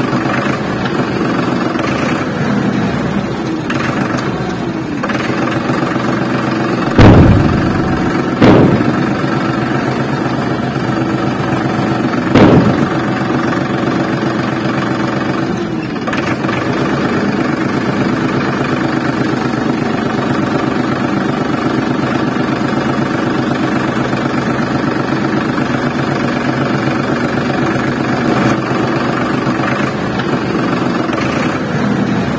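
Tractor engine running steadily at an even pitch, with three loud sudden thumps about seven, eight and a half and twelve and a half seconds in.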